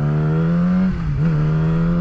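Sport motorcycle engine accelerating under the rider, its note climbing steadily, with a brief dip in pitch about a second in before it picks up again.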